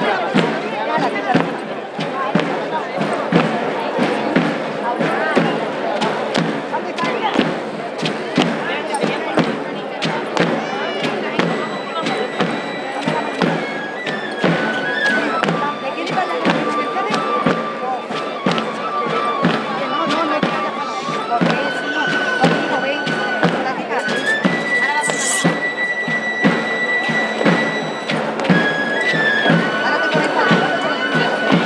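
Flute and tamboril (pipe and tabor) playing a traditional dance tune: a high, thin flute line holding long notes that step up and down between pitches, over a steady drumbeat, with a murmur of crowd voices.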